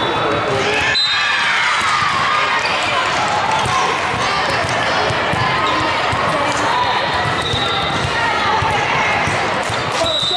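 Echoing din of a multi-court indoor volleyball hall: volleyballs being struck and bouncing on hardwood floors as scattered sharp knocks, over the steady chatter of many voices. A few brief high-pitched tones cut through near the start and in the last few seconds.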